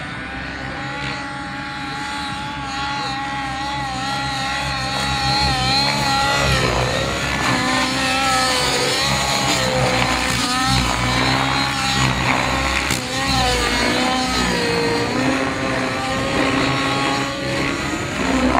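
Radio-controlled helicopter with a smoking nitro engine in flight. The engine and rotor note wavers up and down in pitch as it manoeuvres, and grows a little louder after the first few seconds.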